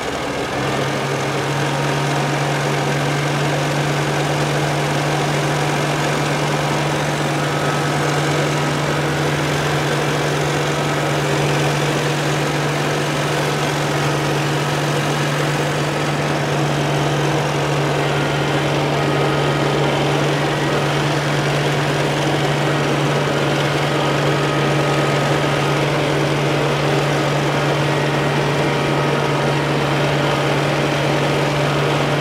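Kubota M6060 tractor's four-cylinder diesel engine running steadily while mowing hay. A strong, steady low hum comes in about a second in as the engine settles at working speed.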